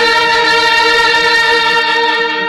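South Indian bandset brass band, with trumpets, clarinets and a sousaphone, holding one loud, steady chord.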